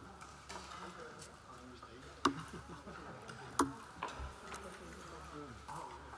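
Eating sounds close to the microphone: a few sharp clicks, the two loudest about a second and a half apart, over the chatter of diners.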